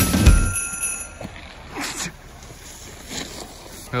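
A bright, bell-like ringing that fades away over about the first second, followed by a much quieter stretch with a couple of faint, brief scraping sounds.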